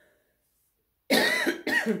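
A woman coughs twice in quick succession, starting about a second in.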